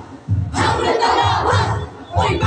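A stage cast shouting together in unison, a group battle cry, over a steady low beat. The shout comes in about a third of a second in, after a brief lull.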